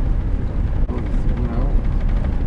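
Steady, loud low rumble of wind buffeting the microphone, with faint voices underneath.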